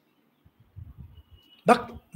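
A short pause in a man's talk, holding only faint low sounds, before his voice starts again near the end.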